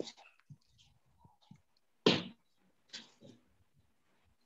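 Quiet video-call audio with scattered faint fragments of voice, and a short, louder breathy noise about two seconds in.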